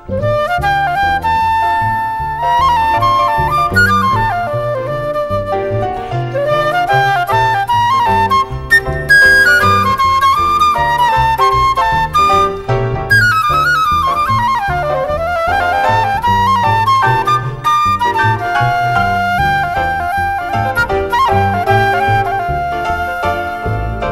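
Flute solo over a band accompaniment with a low bass line, the melody moving in quick runs up and down, during the song's instrumental break.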